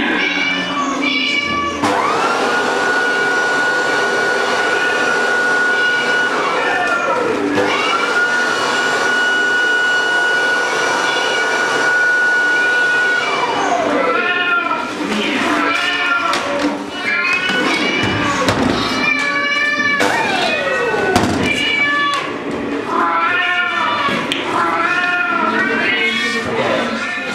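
A loud electronic sound piece made of meow-like wavering calls, with two long steady high tones that each end in a falling glide, and a further downward glide later.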